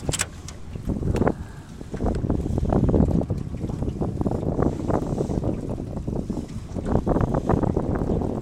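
Wind buffeting the microphone and water slapping a small boat, a steady low rumble broken by frequent short knocks and bumps.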